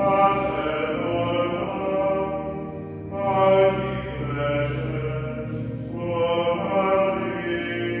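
Plainchant sung at a low male pitch, in sustained phrases that break briefly about three and six seconds in.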